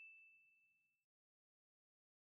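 The dying tail of a single bell-like ding: one high ringing tone fades away within the first second, followed by dead digital silence. It is a transition chime that marks the switch to the slow-reading repetition of the phrase.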